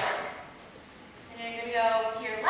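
A single sharp hand clap with a short echo off the hall, then a woman's voice starting about a second and a half in.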